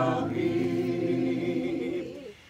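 A group of voices singing a hymn together without instruments, holding long sustained notes that change pitch slowly.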